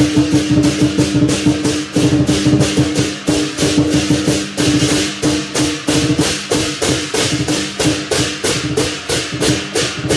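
Lion dance percussion ensemble playing live: drum, clashing cymbals and gong keep up a fast, even beat of about three to four strokes a second, with a steady ringing tone beneath.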